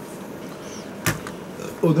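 A single sharp click of plastic LEGO pieces being handled, about a second in, over quiet room tone.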